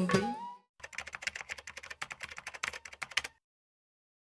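The music ends in the first half second. After a short gap comes about two and a half seconds of rapid, irregular key clicks, a typing sound effect, which stops suddenly.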